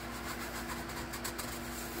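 Paper towel rubbing against the inside of a stainless steel distiller boiler pot, wiping out scale loosened by citric acid, with a run of quick scrubbing strokes through the middle. A steady low hum runs underneath.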